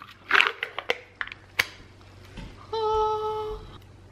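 Foil seal being peeled off a plastic tub of vanilla frosting: a short crinkling tear in the first second, then a few light clicks. Near the end, a steady held tone lasting about a second.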